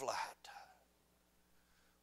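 A man's voice finishing a spoken word, then a pause of near silence with faint room tone.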